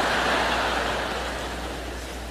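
A large audience laughing: a swell of crowd laughter that peaks right at the start and slowly dies away.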